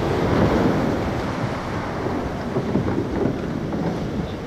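Rushing whitewash of breaking surf around a surf boat as it pushes through a wave, mixed with wind buffeting the microphone. The noise is loudest in the first second, then steady.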